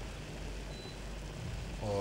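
Faint, steady sizzle of a tomato and kavourmas sauce simmering in a frying pan over low heat, with a low hum underneath. A man's voice begins near the end.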